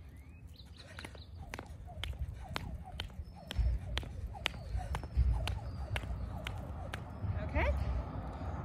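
Jump rope skipping on a foam exercise mat: the rope strikes the mat and one foot lands on each turn, a steady run of sharp ticks about twice a second.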